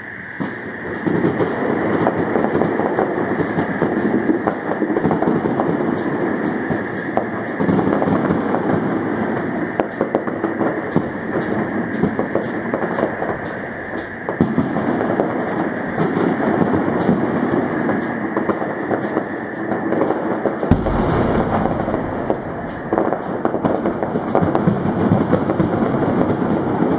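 Fireworks display: a dense, continuous run of sharp bangs and crackles from bursting aerial shells over a steady noisy background.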